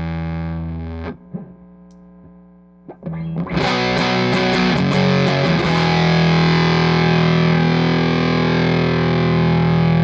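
Electric guitar, a Telecaster, played through a Walrus Audio Jupiter fuzz pedal with the fuzz engaged. A ringing chord is cut off about a second in, a few quiet notes follow, then quick picked strums lead into a loud chord that is held and left ringing.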